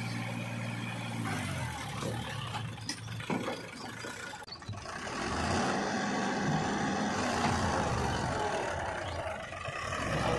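Powertrac 434 DS Plus tractor's diesel engine running, then revving harder about halfway through as it hauls a trolley loaded with mud through a muddy pit.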